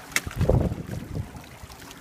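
Wind buffeting the phone's microphone in irregular low gusts, with one sharp click just after the start.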